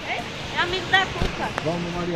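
A voice talking indistinctly, with a short knock about halfway through.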